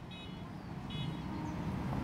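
Low rumble of road traffic, growing gradually louder, with two short high chirps, one near the start and one about a second in.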